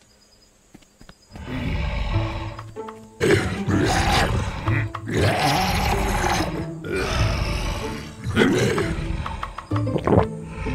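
A cartoon creature's roars and growls, several in a row, over background music, starting after a near-quiet first second.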